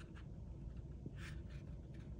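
Faint rustle of a cardstock paper template being positioned on folded cardstock, with one soft brushing scrape a little past the middle.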